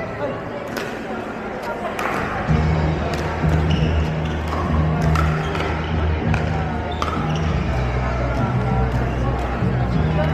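Pickleball paddles striking the plastic ball on several courts: sharp, scattered pops over chatter in a large echoing hall. From about two and a half seconds in, bass-heavy background music comes in over them.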